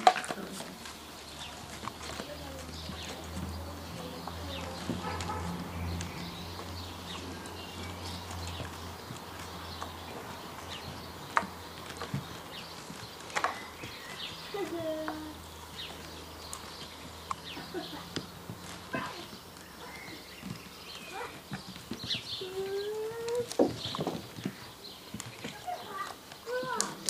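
Belgian Malinois puppies playing with a Sheltie: scattered knocks and taps of paws on wooden play boxes, with a few short whines or yelps, over a steady low hum that stops a few seconds before the end.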